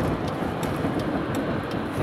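Steady road and engine noise inside the cabin of a Mercedes-Benz car moving in freeway traffic, a low even rumble with no sudden events.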